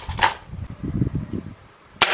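A single moderated shot from a .22 Hatsan Blitz PCP air rifle, a short sharp crack about a quarter second in.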